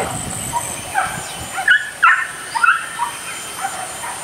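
Hunting dogs barking: a handful of short, high barks between about one and three seconds in.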